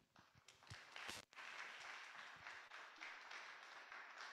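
Faint applause from a small audience, thickening about a second in.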